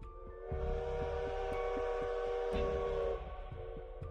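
A steam whistle blowing one held chord for about two and a half seconds, with a hiss of steam. It starts suddenly about half a second in and cuts off near the end, over dark background music with a low repeating pulse.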